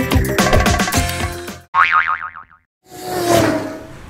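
Short animated transition sting: a quick, busy percussive jingle for under two seconds, then a wobbling boing-like pitch that slides down, a brief gap of silence, and a whoosh that swells and fades with a held tone in it.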